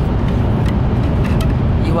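Steady, loud low rumble of a Shinkansen bullet train heard from inside the passenger cabin while running, with a few faint clicks over it.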